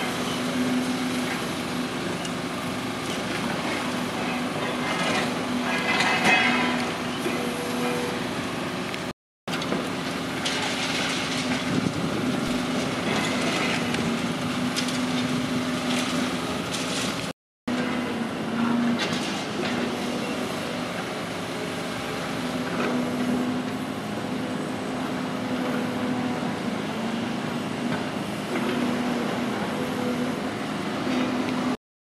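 Demolition excavators working: steady diesel engine hum under irregular crunching and clattering of concrete rubble and metal as the demolition jaws break and move debris. The sound cuts out completely twice, briefly.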